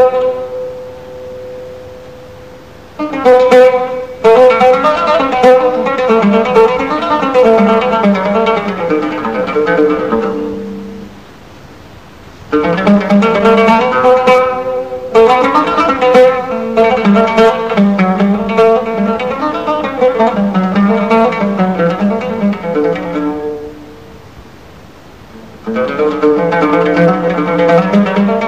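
Solo plucked string instrument playing an improvised Arabic taqsim in long melodic phrases. Between phrases the notes die away into short pauses: just after the start, about eleven seconds in, and near the end.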